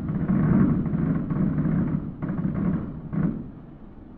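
Fireworks shells bursting overhead: a dense rolling rumble of booms, with new bursts about two and three seconds in, fading near the end.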